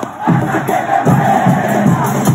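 Loud football stadium crowd chanting and cheering en masse, with music mixed in.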